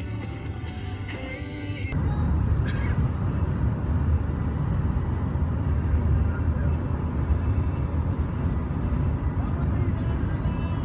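Background music for about the first two seconds, then it cuts to the steady low rumble of road and engine noise heard inside a vehicle cruising on a freeway.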